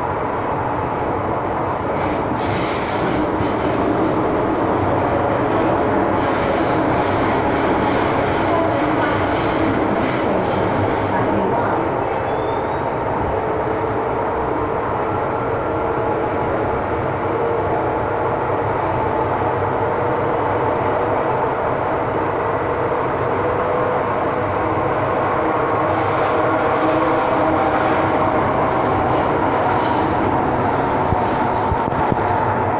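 Metro-Cammell M-Train electric multiple unit running at speed through a tunnel, heard from inside the passenger car: a steady, loud rumble of wheels and running gear, with a high, thin wheel squeal coming in a couple of seconds in and again near the end.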